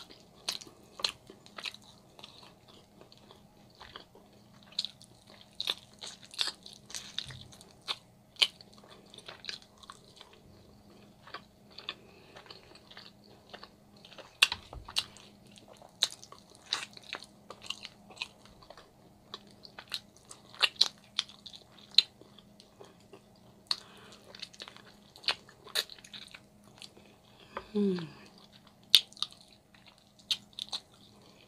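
Close-miked eating: biting and chewing slow-cooked meat off a rib bone, with many wet mouth clicks and smacks, and a short "mm-hmm" near the end.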